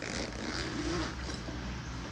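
Zipper on the top compartment of a Cordura tactical shoulder bag being pulled open in one continuous run.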